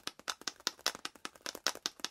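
A strong magnet rattling back and forth inside a plastic 35mm film can as the can is shaken, clicking sharply against the can's ends about seven times a second. Each pass of the magnet through the wire coil wound on the can induces the current that lights the LED.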